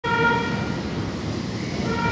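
Train horn sounding twice, one blast near the start and a second near the end, over the steady rumble of a moving train.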